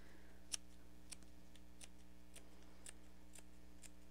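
Scissors snipping into the seam allowance of waterproof canvas to clip it around a curve: short, faint snips about two a second.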